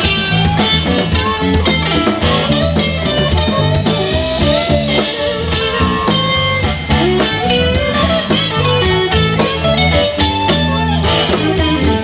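Live electric blues band playing an instrumental passage: electric guitar, electric bass and drum kit, with a harmonica played into a microphone.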